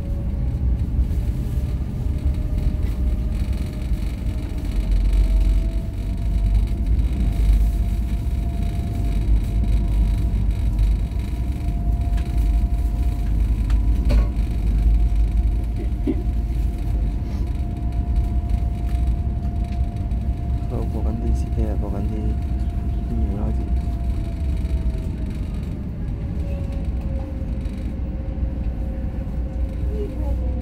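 Passenger ferry's engines running under way: a deep steady rumble with a droning tone that rises in pitch a few seconds in as the vessel gathers speed, holds steady, then eases back down near the end.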